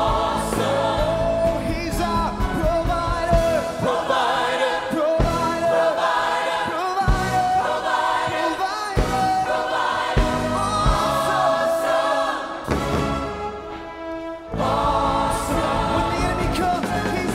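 Gospel worship song: a church choir sings with instrumental accompaniment and steady beats, and a male soloist sings into a handheld microphone. The music dips briefly about three-quarters of the way through, then comes back at full level.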